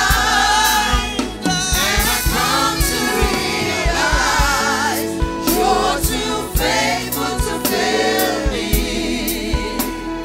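A worship team of several voices singing a gospel song together, backed by a live band with held keyboard-like tones and drum hits.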